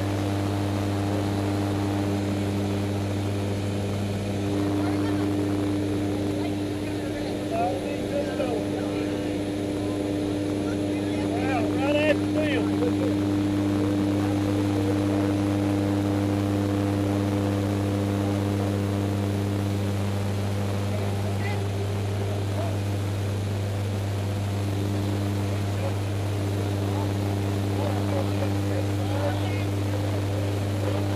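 Propeller airplane's engine drone heard inside the cabin in flight: a steady deep hum with several steady higher tones over it.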